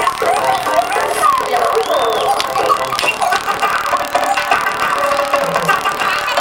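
Music playing throughout, mixed with voices.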